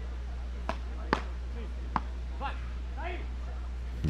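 Three sharp pops of a beach tennis ball struck by solid paddle rackets during a rally, the second one loudest, with faint distant voices in between and a steady low hum underneath.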